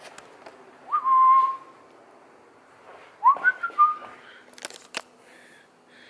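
A person whistling two short notes, each sliding up and then held, about a second and three seconds in. Near the end come a couple of sharp clicks.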